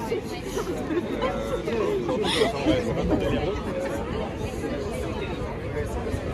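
Chatter of many people talking at once at crowded café terrace tables and among passers-by, with no single voice standing out. A brief, sharper, higher sound rises above the babble a little over two seconds in.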